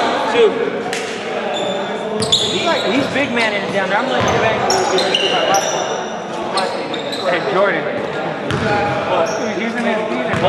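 Players' voices calling out and chattering, echoing in a large gym, with a basketball bouncing on the hardwood court now and then.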